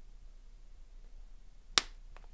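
Flush cutters snipping a mounting post off a clear plastic whoop frame, with one sharp snap near the end.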